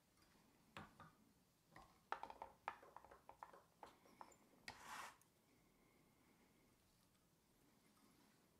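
Faint handling sounds from fingers working yarn and hook at a fly-tying vise: a scatter of soft clicks and taps over a few seconds, ending in a brief rustle about five seconds in.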